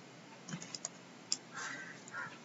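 A few faint, light clicks and taps of a stylus on a pen tablet during handwriting, the sharpest about a second and a quarter in, followed by a brief soft noise near the end.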